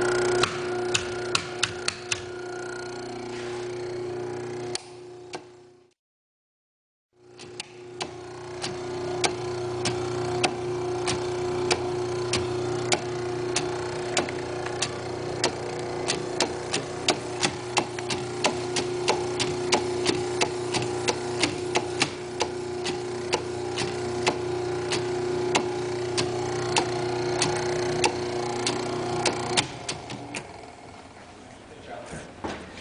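Electric motor running with a steady hum, with a fast, regular clicking over it, about three clicks a second. The sound drops out briefly about six seconds in and stops just before the end.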